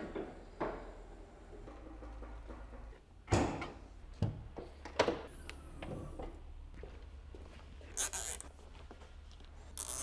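A handful of separate knocks and thunks, the loudest about three seconds in and the last about eight seconds in, over a faint low steady hum.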